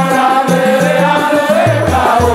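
Group of men singing a Swahili qaswida together, accompanied by hand-beaten frame drums with jingles.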